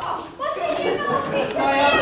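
Many children's voices shouting and calling out at once, overlapping, in a large hall.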